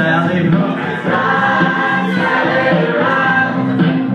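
Amplified music with singing: a voice carries a melody over sustained low accompaniment notes.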